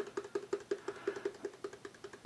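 Plastic pepper shaker shaken over a saucepan, a fast, even run of light taps, about seven a second.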